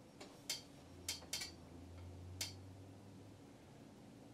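Faint clicks from the control panel of a Kemper Profiling Amplifier as its soft buttons and knob are worked to scroll through effect presets, about five separate clicks spread unevenly.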